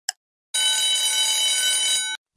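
A quiz countdown timer's sound effect: one last tick, then about half a second in a steady electronic alarm tone that sounds for about a second and a half, signalling that time is up.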